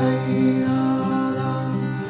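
Martin OM-42 steel-string acoustic guitar played solo, a chord struck at the start and its notes ringing on over a moving bass line.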